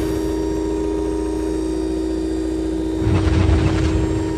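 Electronic title-sequence sound: a steady synthesized drone of several held tones over a low hum, with a deep rumbling swell about three seconds in.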